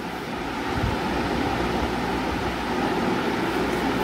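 Steady rushing background noise that grows slightly louder over the few seconds, with no distinct events in it.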